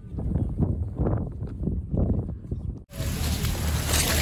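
Indistinct low sounds, then an abrupt cut about three seconds in to loud wind buffeting the microphone outdoors.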